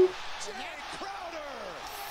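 Basketball game broadcast audio playing at low level: faint play-by-play commentator speech over arena crowd noise.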